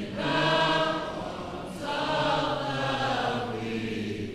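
A choir singing slowly in unison: two long, held phrases with a brief breath between them about two seconds in.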